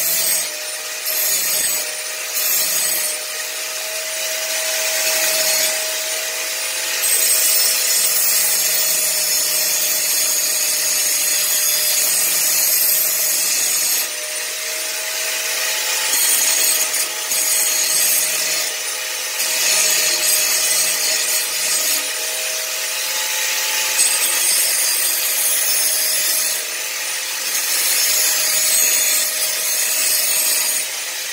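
Angle grinder running continuously and grinding a metal machete blade. Its steady motor whine carries under the grinding noise of the disc on the metal, which swells and eases every few seconds as the disc is pressed on and lifted.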